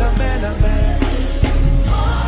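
A congregation singing a worship song together with a live band, voices carried over bass and a steady drum beat.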